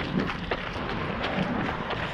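A runner's footsteps on pavement over a steady rushing noise on a chest-worn camera.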